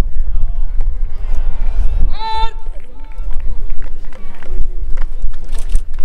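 People's voices at a ballpark, mostly faint chatter, with one loud, high-pitched shouted call about two seconds in, over a heavy, uneven low rumble.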